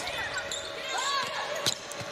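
Court sound of a basketball game in a near-empty arena: faint short squeaks and calls from the floor, and one sharp knock of the ball on the hardwood about three-quarters of the way through.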